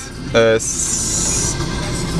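2004 Volkswagen Golf's 2.0-litre four-cylinder engine idling at about 1,000 rpm, heard from inside the cabin. A brief hiss comes about half a second in and lasts about a second.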